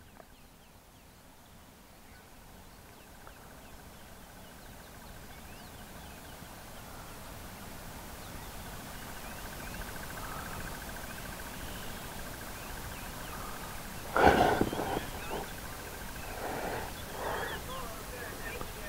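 Open-bush wildlife ambience: a steady high-pitched trill and scattered short chirps, with one loud animal call about fourteen seconds in and a few shorter calls after it.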